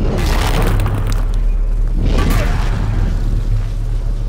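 Film sound effect of a hammer smashing into a crystalline bridge: a sudden heavy boom at the start and another surge about two seconds in, over a deep rumble, with the orchestral score underneath.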